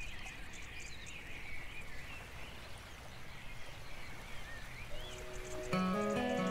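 Small birds chirping and singing over a steady low background hiss. Near the end, music with held pitched notes comes in and becomes the loudest sound.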